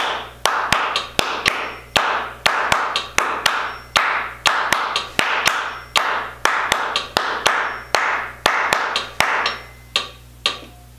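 Hands clapping out a written rhythm pattern over and over, about two claps a second with some quicker pairs, each clap trailing a short echo.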